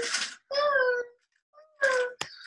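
A young child's wordless, high-pitched vocal sounds, two short ones: one about half a second in and one near the end.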